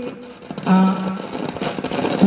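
A man's voice through a handheld microphone: a short pause, then one syllable held on a steady pitch for about half a second before the talk goes on.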